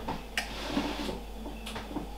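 Two light clicks about a second and a half apart over low room noise.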